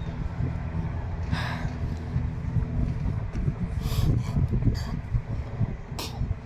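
A steady low engine hum in the distance, with wind buffeting the microphone in gusts.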